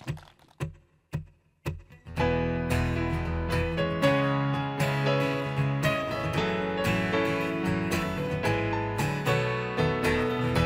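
Four short, evenly spaced taps, then about two seconds in the instrumental intro of a ballad begins: acoustic guitar strumming over a full accompaniment with steady bass.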